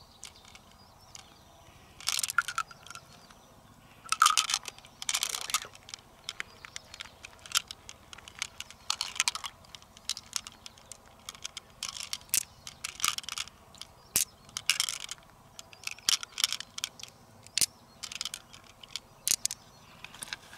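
Fingers probing and squeezing the wet flesh of a large freshwater mussel: irregular short squelching, tearing bursts mixed with small sharp clicks.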